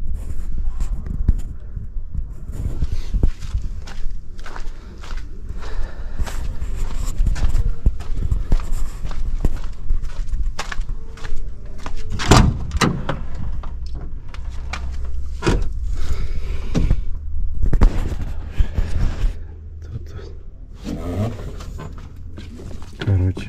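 Footsteps and handling knocks while walking around a truck, over a steady low rumble. About twelve seconds in comes a sharp clack as the cab door handle is pulled and the door opened, followed by more knocks a few seconds later while climbing into the cab.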